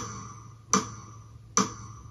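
Count-in clicks of a metronome or backing track, sharp ticks evenly spaced a little under a second apart, counting in the piece.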